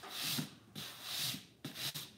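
Hand sanding or rubbing on the edge of a cut wooden puzzle piece, in repeated back-and-forth strokes about two a second.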